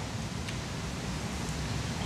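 Steady hiss of hall room tone, an even noise with no distinct events.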